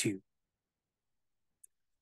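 Near silence: the last spoken word ends right at the start, then dead quiet broken only by one tiny, faint click about one and a half seconds in.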